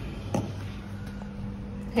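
A low, steady hum with one short click about a third of a second in.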